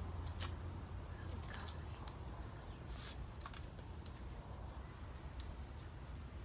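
Quiet outdoor background: a low steady rumble that eases off after the first second or two, with about eight faint, sharp clicks scattered irregularly through it.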